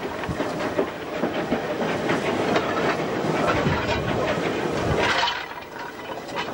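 North British Railway 0-6-0 steam locomotive No. 673 running, heard from the footplate: a dense, steady clatter with steam hiss, easing slightly near the end.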